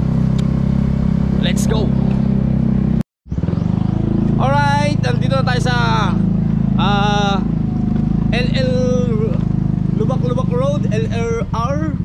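Small motorcycle engine running steadily at riding speed, its drone cutting out briefly about three seconds in before resuming, with voices over it.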